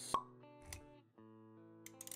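Animated-intro music with held tones, punctuated by a sharp pop just after the start and a softer low thump a little later; the music drops out for a moment about a second in, then resumes.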